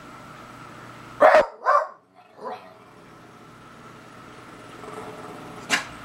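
Beagle barking: two loud short barks in quick succession about a second in, then a softer third, and one more short bark near the end.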